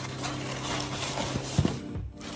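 Shredded kraft paper packing filler rustling and crackling as hands dig into it inside a cardboard box, with one sharp click or knock near the end.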